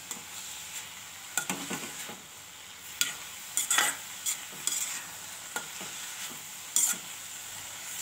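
A metal spatula stirs and turns mustard greens with sweet corn in a kadhai over a steady faint sizzle. It scrapes and knocks against the pan at irregular moments, most sharply about three, four and seven seconds in.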